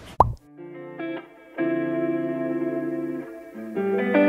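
A short transition sound effect that drops quickly in pitch, followed by outro background music with guitar chords, quiet at first and then louder about one and a half seconds in.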